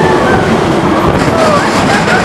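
Roller coaster train running fast along its track, heard from a seat on board: a loud, steady rumble and clatter of the wheels, with a few short gliding tones over it.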